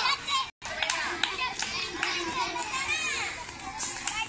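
A crowd of children at play, shouting and chattering over one another. The sound cuts out completely for a moment about half a second in.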